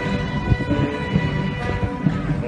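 A municipal wind band playing a danzón, its brass and reeds holding long sustained chords, over a heavy irregular low rumble of wind buffeting the microphone.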